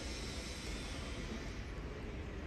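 Quiet, steady room tone of a large hall, with no distinct sound standing out.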